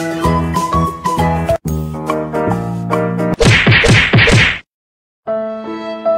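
Edited-in background music with a run of plucked or keyed notes. About three and a half seconds in comes a loud, noisy burst of about a second that rises and falls several times. It cuts off into a brief silence, after which slower music with long held notes begins.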